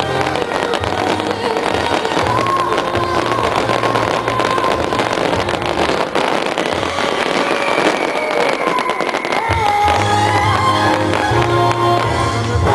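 Aerial fireworks bursting with dense crackling and popping, thickest through the middle, over music with a steady bass line.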